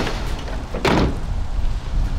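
Pickup truck tailgate being swung shut, one slam about a second in.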